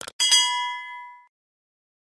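Subscribe-button animation sound effect: a short mouse click, then a bright bell ding that rings out and fades over about a second.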